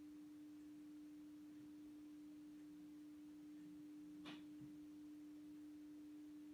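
Near silence, with a faint steady hum on a single pitch and one faint tap about four seconds in.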